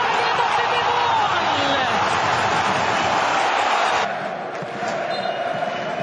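Stadium crowd cheering a goal, a loud dense roar that cuts off abruptly about four seconds in, giving way to quieter crowd noise.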